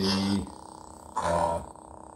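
Replica lightsaber's sound board humming steadily and low, with a short louder electronic burst a little over a second in.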